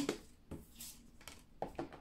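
Faint rustles and a few soft taps of a tarot deck being handled, as a card is drawn and laid face up on a wooden table.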